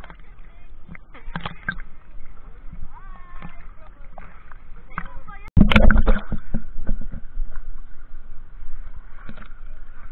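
Seawater sloshing and lapping against a waterproof camera held at the surface, with a sudden loud splash over the camera about halfway through, then choppy sloshing.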